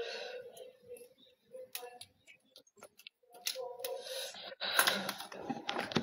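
Scattered light clicks and taps, sparse and uneven, with a little faint voice or breath near the start and toward the end.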